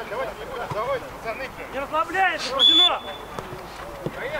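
Men's voices calling out on a football pitch, with a short, steady referee's whistle blast about two and a half seconds in.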